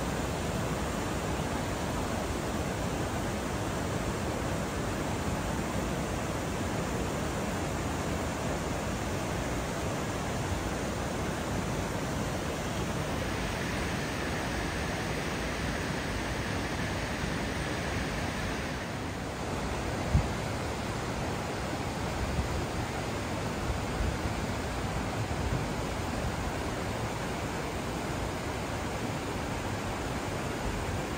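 Steady rushing of a waterfall and river rapids, an even noise that never lets up. A single sharp knock comes about twenty seconds in.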